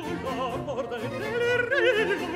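Baroque opera aria: a high voice, soprano or countertenor, sings with a wide vibrato over a baroque orchestra.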